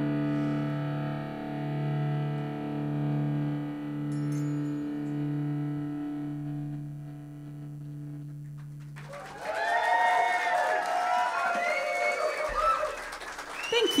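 The band's final held chord rings on with a slow pulsing and fades away. About nine and a half seconds in, the audience breaks into cheering, whooping and applause.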